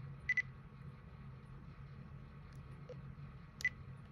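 Short electronic beeps from a handheld device: a quick double beep just after the start and a single beep about three and a half seconds in, over a low steady hum.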